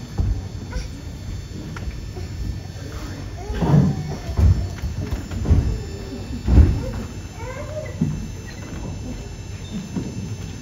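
Men's voices calling and shouting in a large hall, with four louder shouts between about three and a half and seven seconds in, among higher wavering calls.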